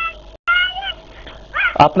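A few short, high-pitched wavering cries. There is a brief cut-out in the audio just before the second one, and the last one falls in pitch. A man starts speaking near the end.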